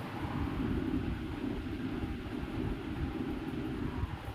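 A steady, low background rumble with no clear events.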